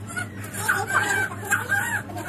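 An infant whimpering in short, wavering cries just after a vaccination injection in the arm.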